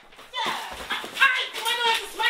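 High-pitched human voices in short, wavering cries and squeals, a run of them starting about half a second in, with no clear words.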